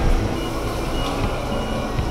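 Steady low rumble of running machinery, with faint short high-pitched tones recurring every half second or so.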